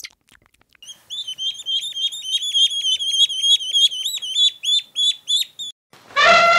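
Mallard duckling peeping: a steady run of short, high peeps, about four a second, beginning about a second in.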